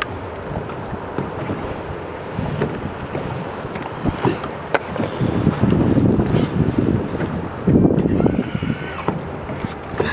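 Wind buffeting the microphone over water lapping at a small boat's hull, swelling louder twice in the second half, with a few light clicks.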